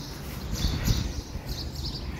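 Outdoor ambience: birds chirping in short, repeated calls over a steady low background rumble.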